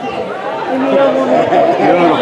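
Spectators chattering, several voices overlapping close to the microphone, with no single speaker standing out.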